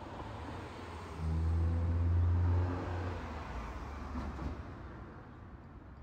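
A motor vehicle passing on the street. A low engine rumble comes in suddenly about a second in, stays loud for about a second and a half, then drops and fades away.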